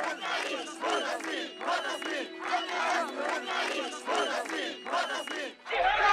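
A crowd of protesters chanting a slogan in unison, a demand for jobs ('Employment for all!'), in short, evenly repeated shouts about two a second. Right at the end a louder, rougher crowd noise takes over.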